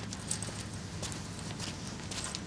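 Footsteps on a concrete garage floor: three sharp, evenly spaced steps of a man walking, over a steady low hum.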